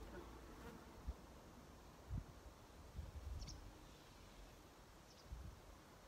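Near silence: faint outdoor background with a few soft, low thumps, the most distinct about two seconds in.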